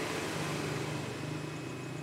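A steady low engine hum, with no speech over it.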